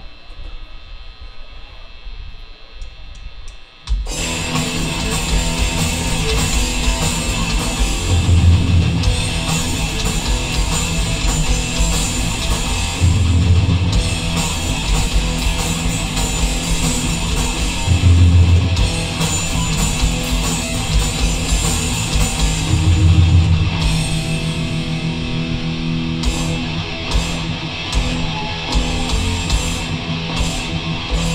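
Live thrash-metal band: a distorted electric guitar plays alone at first, then the full band of guitars, bass and drums comes in suddenly about four seconds in and plays on loud and dense.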